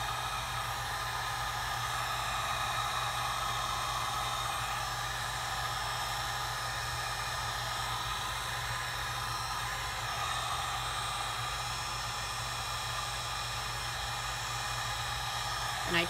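Heat gun running steadily, its fan blowing a constant rush of hot air over wet epoxy and alcohol ink to make the ink spread and blend.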